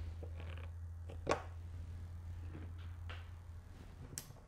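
Screwdriver tightening the nut on a reversing solenoid's terminal post: a few faint ticks and one sharp metal click about a second in. A steady low hum runs underneath and fades out near the end.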